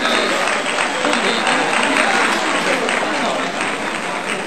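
Busy restaurant din: many voices chattering under a dense, steady patter of small clicks and clatter.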